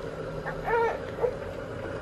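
A baby's short, high-pitched coo, about half a second long, a little under a second in, over a faint steady hum.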